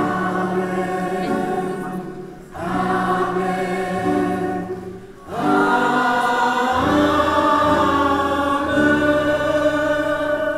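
A choir and congregation singing a hymn together in three phrases of long held notes, with short breaks about two and a half and five seconds in. Low notes join the singing for the last few seconds.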